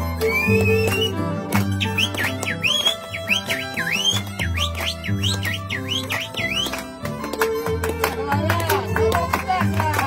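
Andean harp and violin playing a lively carnival tune, the harp's deep plucked bass notes running steadily under it. A high, swooping line that slides up and down several times a second rides over the music for most of the first seven seconds. Men's voices join in singing near the end.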